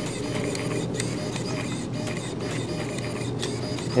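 Micro servo in an animated skeleton fish prop running, a steady whirring buzz with faint clicks as it jerks the fish.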